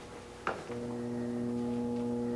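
A single knock about half a second in, then a steady low hum with several even overtones that starts shortly after and keeps going.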